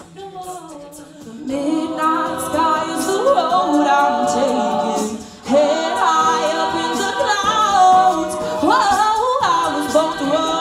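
Women's a cappella group singing in close harmony behind a lead vocalist, with vocal percussion clicking out a beat. It starts soft, swells after about a second and a half, and dips briefly about five and a half seconds in.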